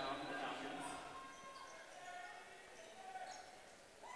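Faint gymnasium sound during play: distant voices on and around the basketball court, a basketball bouncing and a few short sneaker squeaks on the hardwood floor. It fades toward the end.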